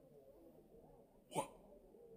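A quiet, faint background, then a single short spoken exclamation, "What?", about two-thirds of the way in, falling in pitch.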